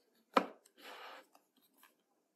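An iPhone 15 Pro and its cardboard box being handled: a sharp tap about a third of a second in, then a short papery scrape lasting about half a second, and a few faint clicks.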